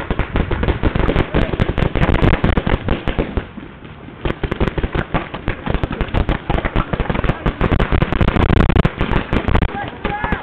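Paintball markers firing in rapid volleys from many players at once, a dense stream of sharp pops with a brief lull about three and a half seconds in.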